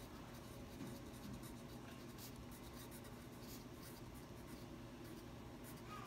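Pencil writing on a paper worksheet: faint scratching of the lead over paper as a few words are written out by hand.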